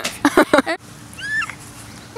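A small white curly-coated dog giving one short, high whine that rises and falls, after a few quick bursts of laughter.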